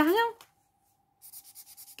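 Fine-tip white marker scratching on black paper in quick, short, faint strokes, with no ink yet showing on the paper.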